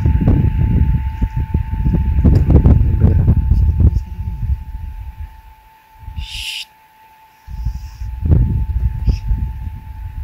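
Wind buffeting the microphone in gusts, easing off for a couple of seconds past the middle, with a faint steady high tone underneath.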